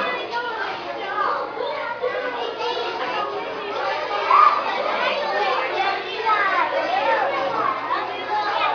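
Many children's voices overlapping in excited chatter and shouting, with one brief louder high-pitched cry about four seconds in.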